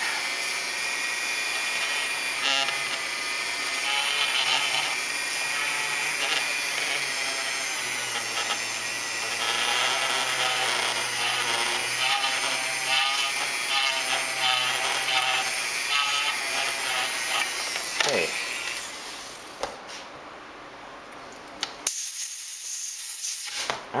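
Dremel 400 rotary tool running with a fine drill bit, cutting a window hole in a styrene model hull through a photo-etched template. Its steady high whine wavers in pitch as the bit is worked back and forth. About eighteen seconds in the motor winds down with a falling tone.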